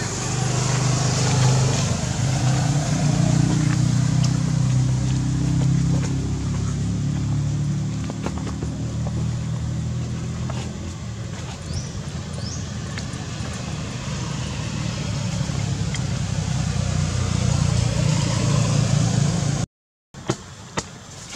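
A steady low rumble like an engine running nearby, with a few faint clicks and two brief high chirps near the middle.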